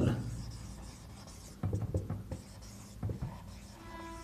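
Felt-tip marker writing on a whiteboard: a series of faint, short, irregular strokes and taps starting about a second and a half in.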